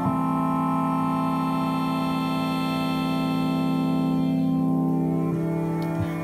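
Synthesis Technology E370 quad morphing wavetable oscillator playing a sustained four-voice chord from a PPG wavetable, the chord changing right at the start and again about five seconds in. Its upper overtones thin out shortly before the second change.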